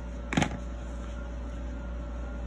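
Scissors snip once through the yarn about half a second in, cutting the working yarn to fasten off. A steady low hum runs underneath.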